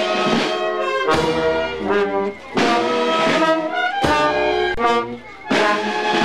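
Brass band playing a slow processional march. Full held chords come in phrases about a second and a half long, each opening with a sharp accent.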